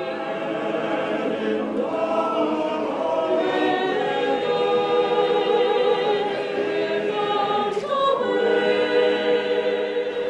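Small mixed choir of women's and men's voices singing a newly composed classical choral piece, holding long sustained chords that shift pitch now and then.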